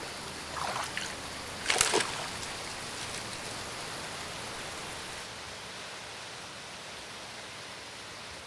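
Shallow river water flowing with a steady rush. Two splashes about a second apart come near the start as hands dip into the water, the second one louder.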